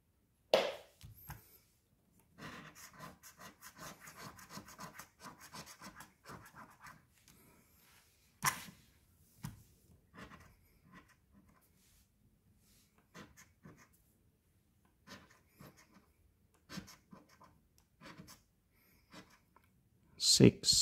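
A coin scraping the coating off a scratch-off lottery ticket: a dense run of quick back-and-forth scratching strokes for several seconds, then shorter, scattered scrapes. A couple of sharp clicks stand out, one about half a second in and one a little before the middle.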